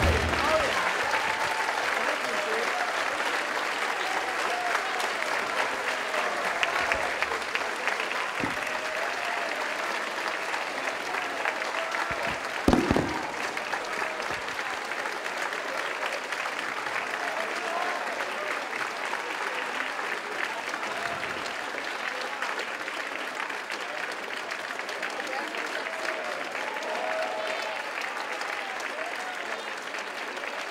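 Audience applauding, with scattered voices over it, slowly dying down. A single sharp knock stands out about thirteen seconds in.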